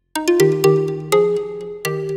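Background music: a melody of short pitched notes, each starting sharply and ringing away, several to the second, resuming just after a brief gap.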